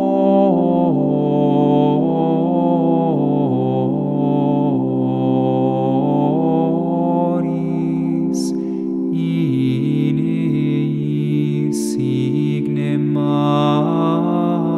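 Small mixed group of male and female voices singing Gregorian chant in Latin, a slow melody over a held low note.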